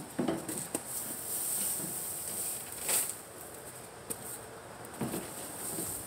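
Dry hay rustling and scraping on concrete as a small child gathers it and drops it into a plastic tub, with a few soft knocks and one louder scrape about three seconds in.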